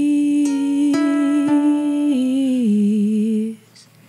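A woman humming a long wordless held note that steps down in pitch twice before stopping about three and a half seconds in, with a few single notes plucked on a solid mahogany ukulele ringing under it in the first second and a half.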